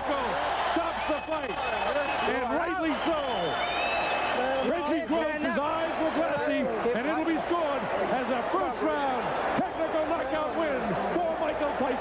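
Boxing-arena crowd noise with many overlapping voices shouting at once, a dense steady din right after the referee stops the fight on a knockout.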